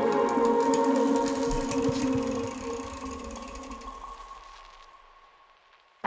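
A melodic chillstep track ending: held synth chords over light regular ticks, fading out steadily to near silence over the last second or so.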